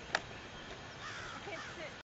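A single sharp click a moment after the start, over faint chirping of small birds.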